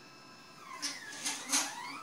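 Orion SkyView Pro GoTo mount's right-ascension motor starting to slew, a whine that glides down and then up in pitch, with a few clicks, beginning about half a second in. The mount drives its right-ascension axis in only one direction.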